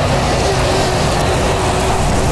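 Articulated lorry driving slowly past at close range, its diesel engine and tyres making a loud, steady rumble with a faint steady droning note.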